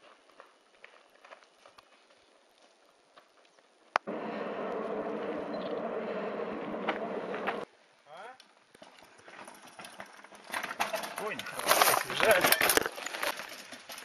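Mountain bike clattering and rattling over rocky ground, loudest in the last few seconds, with many sharp knocks. Earlier, a few seconds of steady noise start with a click and cut off abruptly.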